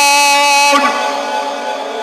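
A man's voice reciting the Quran in melodic maqam style through a microphone and loudspeakers, holding one long steady note that ends a little under a second in. Fainter tones ring on after it at a lower level.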